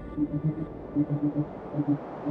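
Dark techno / industrial instrumental: a synth bassline of short, syncopated repeated notes. Held chord tones fade out within the first second, and a hiss of noise grows louder toward the end.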